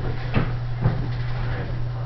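Two clunks about half a second apart from a Vandercook letterpress proof press being worked by hand, over a steady low hum.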